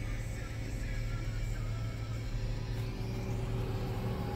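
Steady low hum of a Hummer H2's V8 idling, heard from inside the cabin, with music playing faintly.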